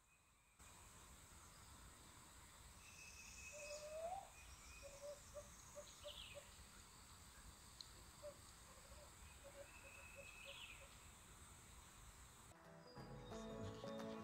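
Faint woodland calls from a turkey caller and an owl mimicking it: a short rising note, then runs of quick, clipped, evenly spaced notes like Morse code.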